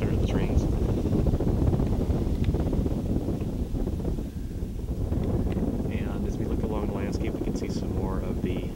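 Wind buffeting the microphone, a rough low rumble that runs on, with a faint voice near the end.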